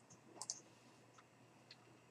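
Near silence with a few faint computer mouse clicks: a close pair about half a second in, then two fainter single clicks.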